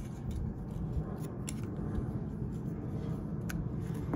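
Small cardboard packaging being handled and pried at by hand, with a few light clicks and scrapes as a part is worked loose, over a steady low background rumble.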